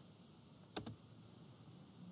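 A single computer mouse click, pressed and released, answering a download dialog, with near silence around it.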